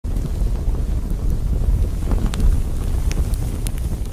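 Logo-intro sound effect: a loud, steady low rumble with scattered crackles.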